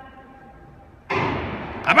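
A starter's gun fires once about a second in, signalling the start of an indoor 60 m sprint; its sharp report rings on in the hall's echo for most of a second.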